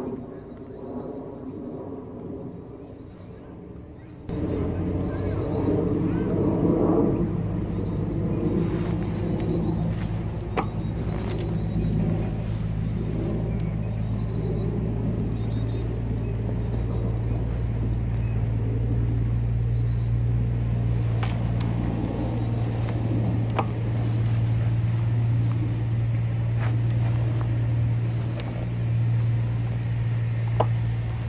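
A steady low engine drone that starts suddenly about four seconds in and runs on evenly, over quieter outdoor background before it.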